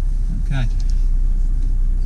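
Mercedes E350 CDI's three-litre V6 diesel idling, a steady low rumble heard inside the cabin. A single spoken word comes about half a second in.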